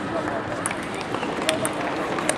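Table tennis balls clicking sharply off bats and tables, several separate ticks, a couple in quick succession about one and a half seconds in, over the steady babble of voices in a busy sports hall.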